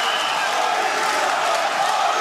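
Steady din of a large arena crowd, many voices at once.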